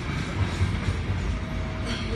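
Freight train of tank cars rolling past, a steady low rumble of steel wheels on the rails, with a brief sharp clank near the end.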